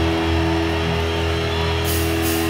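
Live electric guitars and bass holding a steady sustained chord, without drums.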